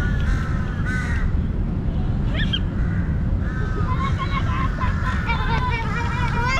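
Crows cawing, mixed with children's voices and a steady low rumble over the microphone.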